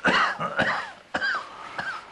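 A man coughing and clearing his throat in three sudden bursts, the first right at the start, then about a second in, then once more shortly after.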